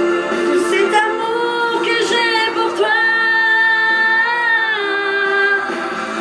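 A woman singing a French ballad with musical accompaniment. She holds one long note from about three seconds in until nearly five.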